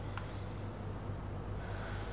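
Felt-tip marker writing on a whiteboard: a couple of light ticks near the start and faint scratching near the end, over a steady low hum.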